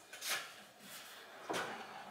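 Faint handling noise in a quiet pause: a soft knock about a third of a second in and a weaker one about a second and a half in, like a cabinet lid or panel being touched.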